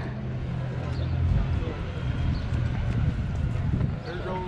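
Outdoor crowd ambience between announcements, with faint voices, a low steady hum for the first second and a half, then a low uneven rumble.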